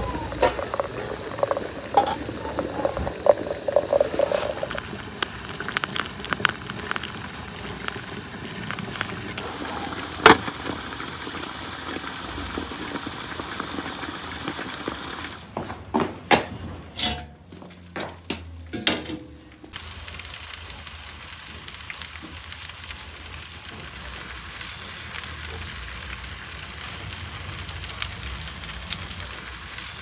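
Hot water pouring from a samovar's tap into a glass teapot for the first few seconds. About halfway through come several metal clanks as the oven door's latch and door are worked. After that there is a steady sizzle from the meat roasting over embers in the wood-fired oven.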